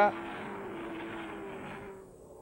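Race car engines on a straight: a steady drone with a faint tone that rises slightly, fading near the end.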